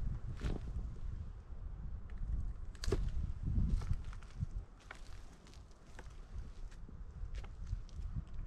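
Footsteps over dry leaves and brush with scattered sharp crunches and clicks, the loudest about half a second and three seconds in, over a low rumble of wind on the microphone.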